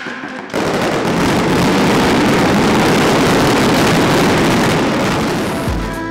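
Mascletà firecrackers going off in a dense, continuous barrage of rapid cracks. It starts about half a second in and eases off just before the end.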